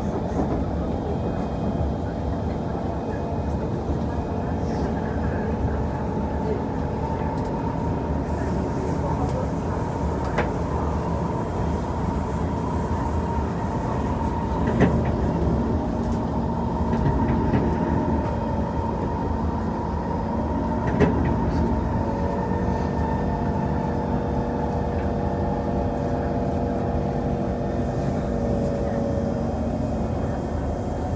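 SMRT C151 metro train running at speed on elevated track, heard from inside the car: a steady rumble of wheels on rail with a steady motor whine. Two sharp clacks come about halfway through and again a few seconds later.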